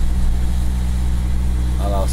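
Diesel engine running steadily at idle, a low even drone heard from inside a truck cab.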